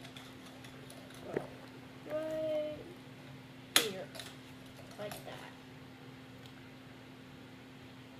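Plastic Lego Bionicle pieces clicking as they are fitted onto the figure by hand, with a sharp snap about four seconds in. A short hummed voice sound comes just after two seconds, and a steady low hum runs underneath.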